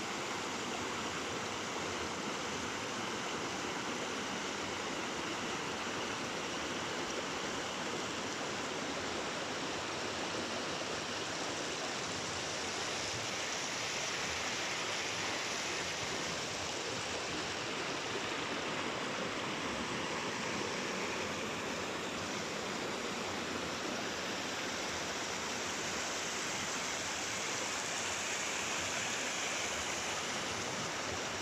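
Shallow rocky river running over boulders in small rapids: a steady rush of flowing water.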